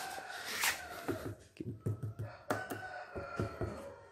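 A rooster crowing in the background, with a long drawn-out call at the start and another through the second half, each sliding slightly down at the end. Scattered sharp clicks and knocks sound in between.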